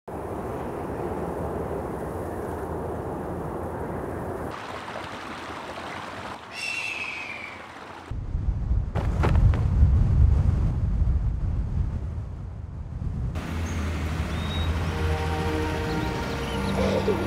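Cinematic wind sound effects: a steady rush of wind, a large bird's short descending cry about six and a half seconds in, then a loud, deep wind rumble. Soft instrumental music with held notes comes in near the end.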